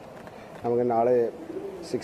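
A man's voice holding one long, low drawn-out syllable, a hesitation sound between phrases, about half a second in.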